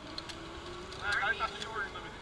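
Zip line trolley running along the steel cable as a rider launches from the platform: a thin whirring tone that rises slowly in pitch, with voices over it.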